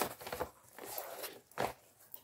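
Rustling and a few light knocks as a page of a fabric zip-up pencil case is turned, with the coloured pencils in their elastic loops shifting. The sharpest knock comes near the end.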